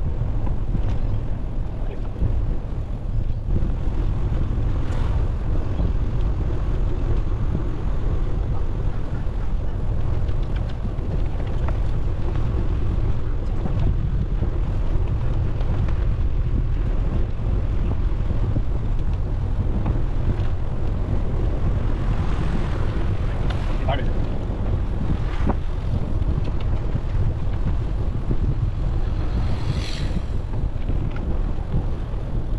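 Wind buffeting the microphone of a camera carried on a moving bicycle: a steady low rumble with no breaks.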